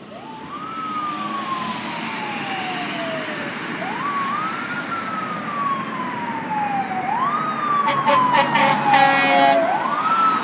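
Fire engine siren wailing as the apparatus approaches, growing louder: each cycle rises quickly in pitch, then falls slowly, repeating about every three seconds. Near the end a burst of rapid pulsing tones joins in, with a steady low drone of engines and traffic underneath.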